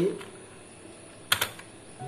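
Computer keyboard keys being typed: a quick cluster of sharp key clicks a little over a second in, amid a quieter stretch.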